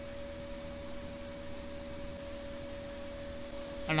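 Steady electrical hum and hiss with a faint constant tone, unchanging throughout; nothing else sounds.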